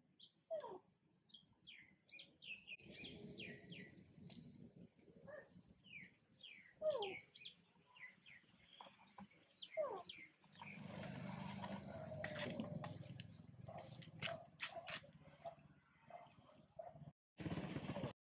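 Small animal calls: many short, quick high chirps, with a few louder squeals that fall in pitch. A stretch of rushing noise joins them near the middle.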